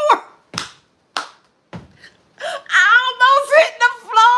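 A woman laughing: a few short breathy bursts, then long, high-pitched peals of laughter in the second half.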